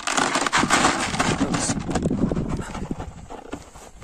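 Dry dog kibble poured from a plastic bowl, rattling into a plastic bucket, while a Kangal dog crunches and gulps it down. A dense clatter for the first two seconds or so, thinning toward the end.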